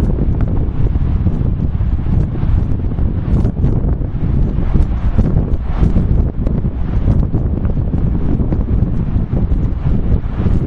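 Strong wind buffeting the camera microphone: a loud, continuous low rumble that flutters with the gusts.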